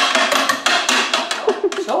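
A spoon knocking and clattering rapidly against the plastic bowl of a food processor, many quick sharp knocks a second, stopping near the end.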